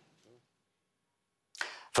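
About a second of dead silence, then a short, sharp rushing whoosh of air-like noise just before a man starts speaking.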